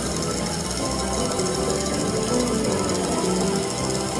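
Lock It Link Piggy Bankin slot machine playing its electronic bonus-feature music at a steady level, with sustained notes over a fast, repeating pulse.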